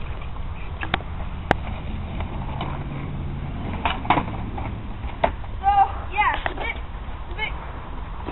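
Skateboard wheels rolling on asphalt with a steady low rumble, broken by a few sharp clacks of the board hitting the pavement during a failed ollie attempt.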